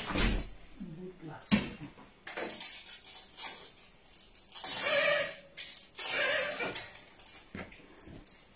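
Dishes and kitchen utensils knocking and clinking in short sharp strikes, with two longer, louder sounds about five and six seconds in.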